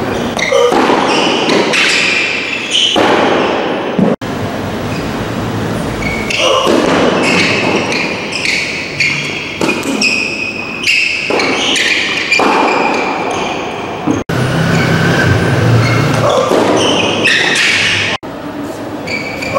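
Tennis balls struck by rackets and bouncing during a rally, with the hits and bounces echoing in a large covered hall.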